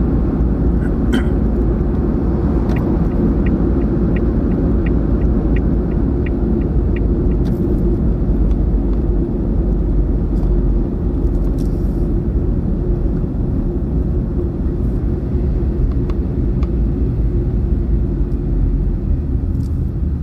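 Steady road and engine rumble of a moving car heard from inside the cabin. A run of light, evenly spaced ticks, about three a second, sounds for around four seconds starting a few seconds in.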